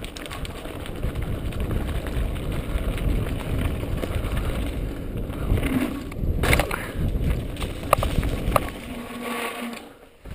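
Mountain bike rolling fast down a dirt trail, picked up by a camera on the handlebars: steady rumble of the tyres over the ground and rattling of the bike, with a few sharp knocks between about six and nine seconds in. The noise drops away suddenly at the end.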